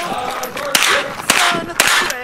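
Sig MPX pistol-calibre carbine fired three times, about half a second apart.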